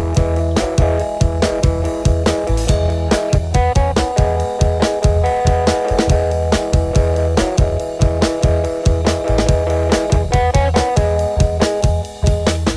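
A pop-rock trio playing the instrumental opening of a song live: electric guitar chords over bass guitar, with a drum kit keeping a steady beat.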